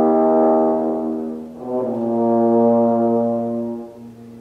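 Bass trombone playing two long held notes, each swelling and then fading. The second begins about a second and a half in, with a lower note sounding beneath it.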